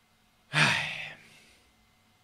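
A man sighing: one breathy exhale with a falling voice, about half a second in.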